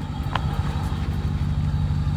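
Dodge Ram 1500 pickup's engine idling steadily with an even low hum, the truck held on a rocky trail slope. A short high chirp comes about a third of a second in.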